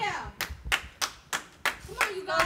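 Hands clapping sharply and evenly, six claps at about three a second, between loud shouted words.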